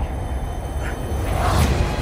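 Low, steady rumble with a brief rushing whoosh about a second and a half in.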